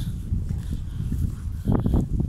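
Footsteps on a wet, muddy paddy bank over a low, uneven rumble on the microphone, with a sharper step near the end.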